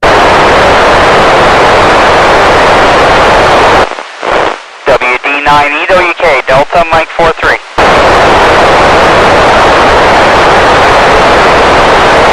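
Loud, steady FM receiver hiss from an Icom ID-5100 transceiver on the TEVEL-5 satellite downlink, starting suddenly at the beginning. From about four to eight seconds in, a weak station's voice breaks through the hiss, fading in and out, before the hiss takes over again.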